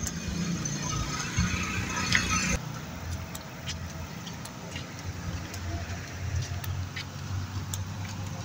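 Low steady rumble of road vehicle noise, with a hiss over the first two and a half seconds that then cuts off suddenly, and a few faint scattered clicks.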